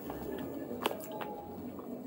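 Quiet room tone with a few faint, short clicks.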